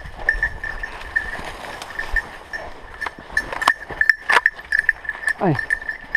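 Footsteps and brush rustling through woodland undergrowth, with a couple of sharp twig snaps about two thirds of the way in. A steady thin high ringing runs underneath.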